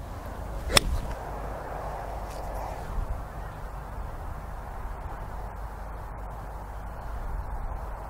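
Golf iron striking a ball off turf: one sharp click about a second in, over a steady low rumble of wind on the microphone.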